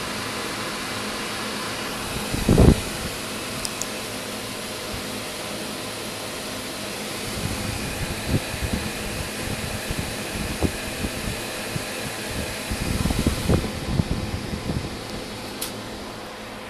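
The many fans of a running gaming PC, large 200 mm case fans among them, making a steady whooshing hum. A few short thumps stand out, the loudest about two and a half seconds in and a cluster near the end.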